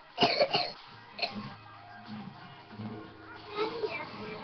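A young girl's voice in a few short, loud bursts just after the start, then quiet acoustic guitar notes and a brief sung phrase near the end.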